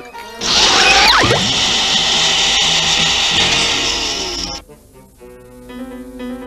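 Cartoon sound effect of a canister vacuum cleaner running: a loud, even whir with a swooping pitch glide about a second in. It cuts off suddenly after about four and a half seconds, leaving quieter cartoon music.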